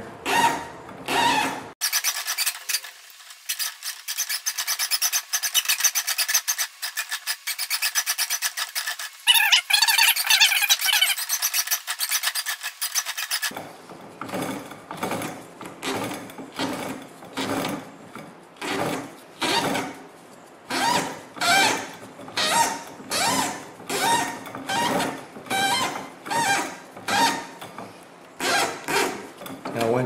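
Thin jute string rasping and rubbing as four strands are drawn taut from a tensioner and wound onto a paper-wrapped cylinder firework shell turned by hand on steel rollers. It starts as a dense, thin-sounding scrape and becomes a rhythmic series of rasping strokes, a little more than one a second.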